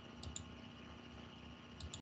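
Faint clicking at a computer: two quick double clicks, about a second and a half apart, over a low steady hum from the microphone line.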